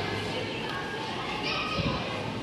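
Children's voices at play, mixed and indistinct, echoing in a large open hall.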